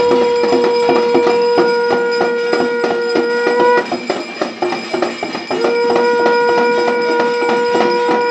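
A conch shell (shankh) is blown in long, steady notes: one held for nearly four seconds, then a second starting a little after five and a half seconds in. Under it runs a fast, constant metallic clanging from a steel plate being beaten and a hand bell being rung.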